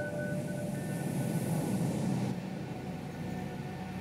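Film soundtrack: ambient music with a few long held notes over a steady low rumble and hiss.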